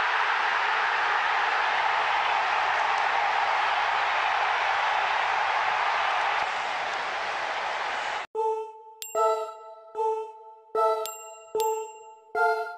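Edited-in intro sound: a steady rushing noise like a drawn-out whoosh, which cuts off abruptly about eight seconds in. Bright bell-like chimes follow, one struck every half to three-quarters of a second.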